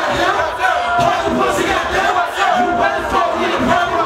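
Rapper shouting lyrics into a handheld microphone over a club PA, with the crowd and people on stage yelling along.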